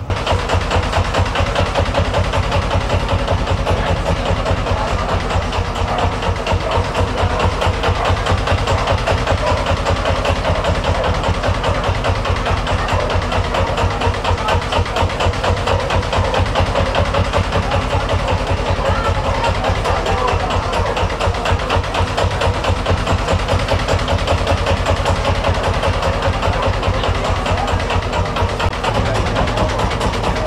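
Lanz Bulldog tractor's single-cylinder two-stroke hot-bulb engine idling, a rapid, even beat of low exhaust thumps.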